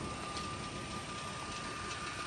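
A steady low mechanical hum with a faint, constant high-pitched whine above it; nothing starts or stops.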